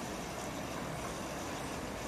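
Steady outdoor background noise: an even, faint rush with no distinct events.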